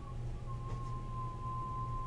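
A steady, high-pitched single tone held at one pitch for about two and a half seconds, over a constant low hum.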